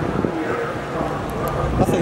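Indistinct voices over a steady low drone of engines.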